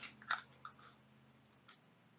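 A few faint, small clicks and scrapes, mostly in the first second, as the lid comes off a small round metal tin of sequins.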